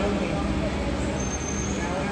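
Steady low engine rumble with a droning hum, and a thin high-pitched whine for about half a second in the second half, over faint background voices.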